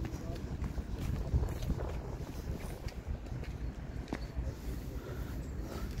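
Wind rumbling on the microphone outdoors, with a few faint footsteps on tarmac.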